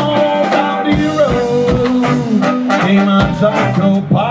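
Live ska band playing, with electric guitar and drum kit keeping a steady beat.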